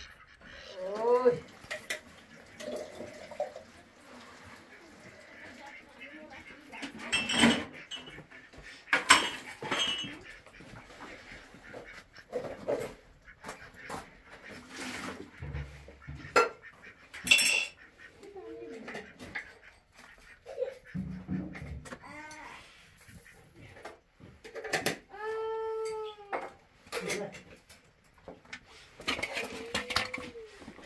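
Pots, dishes and utensils clink and knock as they are handled at a kitchen counter and gas stove, in sharp separate strikes. Several short calls from domestic fowl are heard between them, one near the start and a few in the last third.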